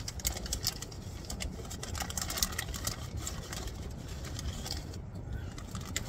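Plastic Doritos chip bag crinkling and rustling as a hand reaches in and pulls out chips, with irregular crackles throughout over a low steady rumble.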